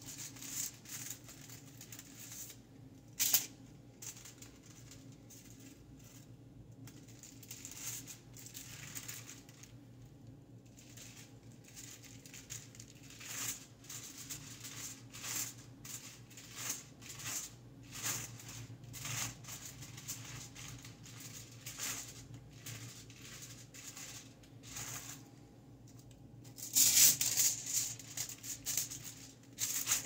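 Sheets of aluminium highlighting foil crinkling and rustling in irregular bursts as they are handled, folded and placed in the hair, with a sharp click about three seconds in and a louder burst of crinkling near the end.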